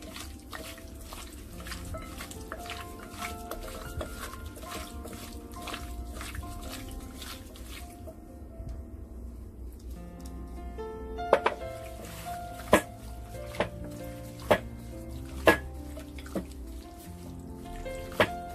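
Background music over the wet squelching of chunks of pork rib being mixed by gloved hands in a glass bowl with marinade and cornstarch slurry. In the second half come several loud, sharp knocks.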